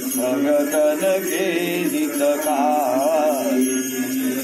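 Devotional bhajan singing: a voice holding long notes with wavering, ornamented turns, over a steady low held note, with small bells jingling.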